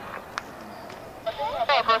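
Aviation radio (air-traffic control frequency): faint background hiss with a single click, then about a second in a transmission opens with a burst of hiss and a man starts speaking Spanish over the thin, band-limited radio voice.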